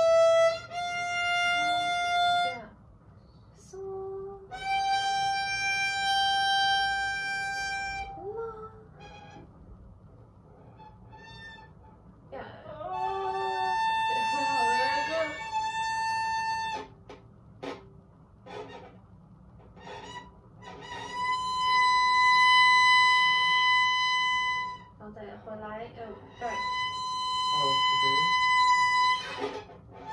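A beginner bowing a violin, one long held note after another with pauses between, the notes mostly climbing in pitch as fingers are put down on the string. Each note lasts about one to four seconds.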